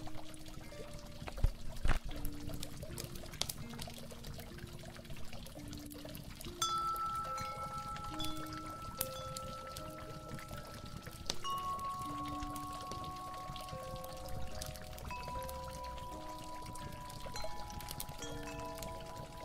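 Water pouring and trickling steadily, under slow, mellow harp music of single plucked notes with a few long held higher notes. Two sharp clicks stand out about one and a half and two seconds in.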